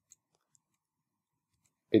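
Two faint clicks of computer keyboard keys, about half a second apart, as a new line of code is started.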